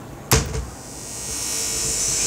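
A sharp pop through the speaker as the PT2399 echo mixer circuit is switched on, followed by a hiss and buzz from the amplifier and speaker that grows steadily louder. This is the noise the builder expected from the circuit's makeshift, unenclosed connections.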